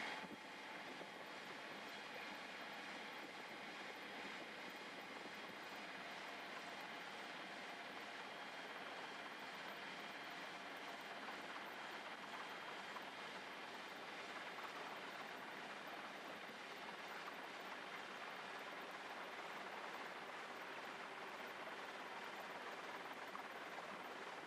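Faint, steady hiss with no distinct events, level throughout.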